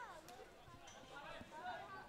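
Faint, distant voices over quiet outdoor ambience, with a few short calls at the start and in the middle.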